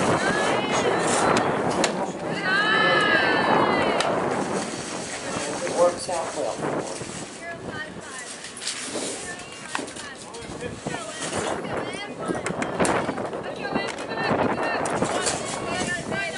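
Voices of players and spectators at a softball game: scattered chatter and shouts, with one loud high-pitched yelled call about three seconds in. A single sharp knock comes about six seconds in.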